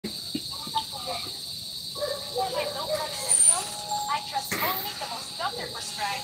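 Soft, low talking over a steady high-pitched hum that runs throughout.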